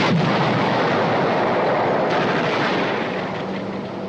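Film battle sound effects of artillery shells exploding among tanks: a blast at the start and another about two seconds in, with continuous heavy rumble between them that eases slightly near the end.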